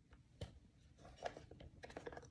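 Faint clicks and knocks of a plastic pencil case being handled and its lid opened: one sharp click about half a second in, then a few smaller clicks.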